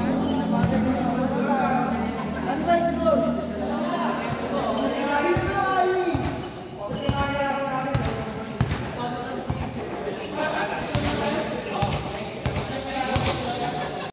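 Basketball bouncing on a hard indoor court, a string of irregular knocks from about five seconds in, under people talking in a large, echoing hall.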